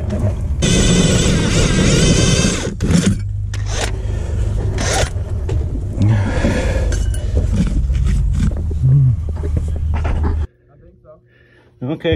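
DeWalt drill running a carbide-tipped hole saw (spider bit) under load as it cuts a hole. A steady motor whine with rough grinding, then the drill cuts off abruptly near the end.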